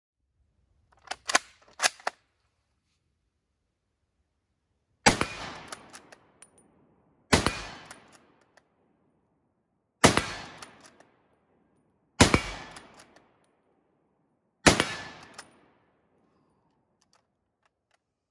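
A Carl Gustafs Model 1896 Swedish Mauser bolt-action rifle in 6.5×55 Swede fires five shots, about two to two and a half seconds apart, each followed by an echo dying away over about a second. A few sharp clicks come before the first shot.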